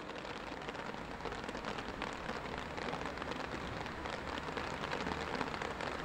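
Steady rain falling, an even hiss of many small drops pattering on surfaces.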